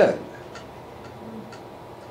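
Quiet room tone with a few faint ticks, just after the end of a man's spoken word.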